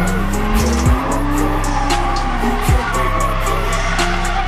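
Hip-hop music with deep sliding bass notes and a fast hi-hat beat, mixed over a drift car sliding with its engine running and tyres squealing. An engine note climbs steadily over the first second and a half.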